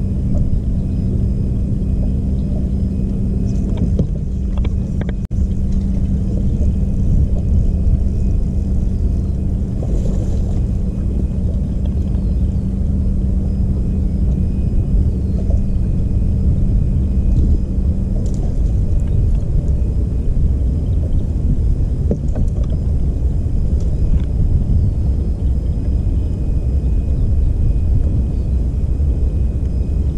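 Steady low rumble on the deck of a bass boat, with the bow-mounted electric trolling motor humming steadily until it cuts off a little past halfway.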